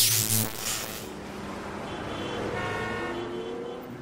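Sound design for an animated logo sting: a loud noisy whoosh that fades over the first second, then several steady electronic tones with one slowly rising tone, dying away near the end.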